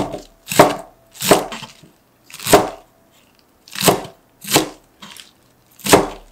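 Cleaver chopping romaine lettuce on a cutting board: about seven separate sharp chops at an uneven pace, roughly one a second, each the blade cutting through crisp leaves and knocking on the board.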